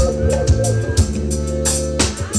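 Live forró band playing: accordion and electric bass over a drum kit keeping a steady beat of about two strokes a second.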